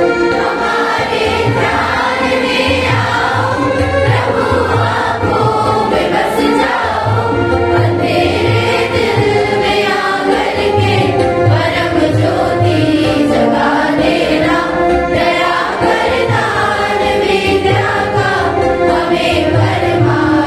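A large group of schoolchildren singing together, with a regular low beat keeping time underneath.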